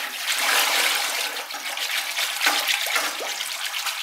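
Wire whisk stirring liquid pottery glaze in a plastic bucket: a steady, continuous swishing and sloshing. The whisk's worn, sharp base has been scraping the bucket bottom and shaving off slivers of plastic that contaminate the glaze.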